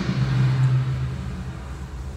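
Techno DJ mix in a breakdown: the beat and highs have dropped out, leaving a held low bass note that fades gradually.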